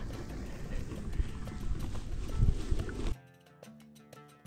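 Low, blustery rumble of a gravel bike being ridden over bumpy meadow grass, with wind buffeting the chest-mounted camera's microphone and a few thumps from the rough ground. It cuts off abruptly about three seconds in, giving way to quiet background music with a light beat.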